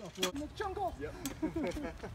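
A person talking, the words not made out, with a low steady rumble underneath.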